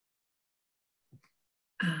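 Near silence on a video-call line, then a faint short sound about a second in and a woman beginning a hesitant "um" near the end.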